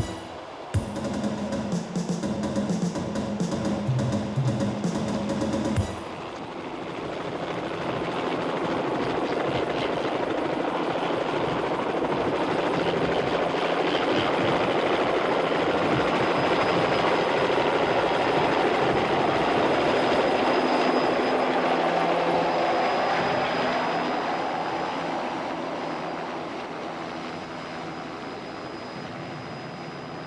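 A helicopter's rotor and turbine noise swelling up to its loudest in the middle and fading away near the end, with a faint high whine over it. A different sound, cut off suddenly about six seconds in, comes before it.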